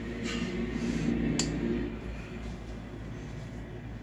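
Table lamp's switch clicking once, about a second and a half in, over a steady low hum of room tone.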